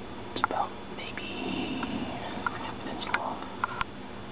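Quiet whispered speech, with a few sharp clicks near the start and near the end.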